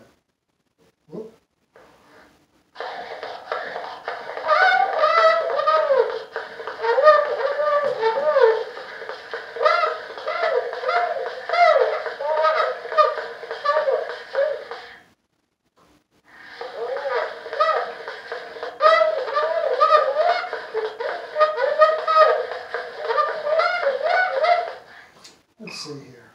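Gillette tinfoil phonograph, hand-cranked, playing back a man's recorded voice from aluminum foil through its paper horn. The voice comes out thin, with no bass below about 500 Hz, over a steady hiss, in two long stretches with a brief break about halfway through.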